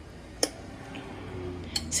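A single sharp click of a metal fork against the stainless steel inner pot of an electric pressure cooker while cooked chicken gizzards are pierced to test whether they are tender. A faint low hum follows.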